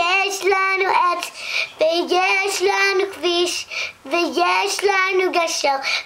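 A young girl singing unaccompanied, a melody of held and gliding notes broken into short phrases.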